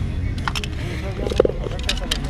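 Handling loose plastic toys, a few light clicks and knocks as they are moved, over a steady low outdoor rumble and faint background voices.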